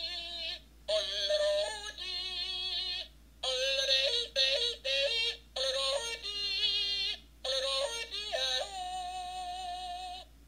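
Yodeling Pickle novelty toy by Accoutrements playing its recorded yodel through its small built-in speaker: sung notes that leap up and down in pitch, in short phrases with brief gaps, ending on a long held note near the end.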